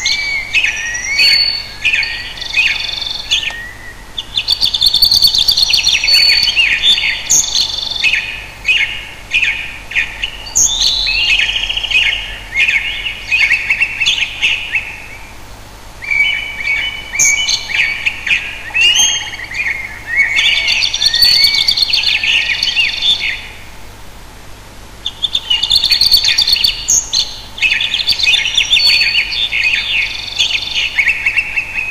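A bird singing: phrases of quick chirps and warbles a few seconds long, with short pauses between them.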